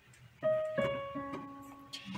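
Digital piano keys pressed softly one after another: three notes starting about half a second in, each ringing and fading, the third one lower.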